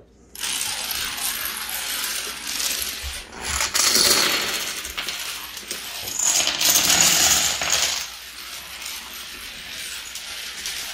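A long chain of small plastic toy dominoes toppling one after another, a rapid continuous clatter. It starts just after the first domino is pushed, swells louder twice (a few seconds in and again a little past the middle), then thins out.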